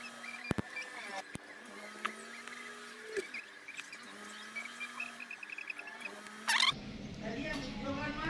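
A few small, sharp clicks and scrapes as a micro-USB cable's plastic plug housing is cut and pried apart with a blade and pliers, over faint background chirps, with a brief louder call-like sound near the end.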